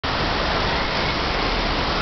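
Steady rushing of water at an indoor waterpark, a dense, even wash of noise.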